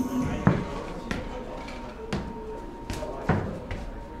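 A soccer ball being played: about five separate thuds as it is kicked, headed and bounced on the floor during a rally.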